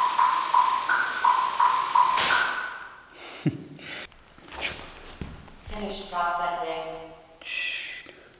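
Electronic metronome beeping at about three beeps a second, with higher-pitched beeps in between, counting in the camera trigger. The beeping stops after about two and a half seconds. A few thumps and a drawn-out voice follow later.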